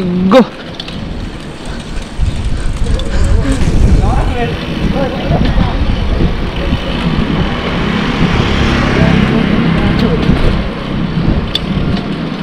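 Wind rushing over the microphone as a mountain bike rolls along an asphalt road, with the rough noise of its knobby tyres underneath. The rushing grows louder about two seconds in as the bikes pick up speed.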